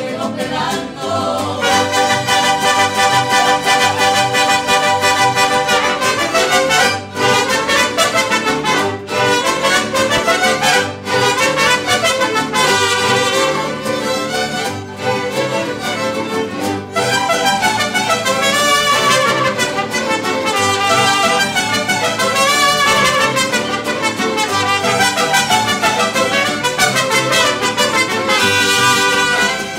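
Mariachi band playing, with trumpets and violins carrying the melody over strummed guitars and a stepping bass line.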